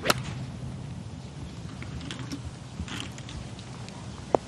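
A golf club strikes the ball on a fairway approach shot, one sharp click right at the start, followed by a low steady outdoor background.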